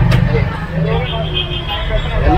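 Low steady rumble of an Ashok Leyland tourist bus's engine and road noise, heard from inside the passenger cabin, under people's voices talking.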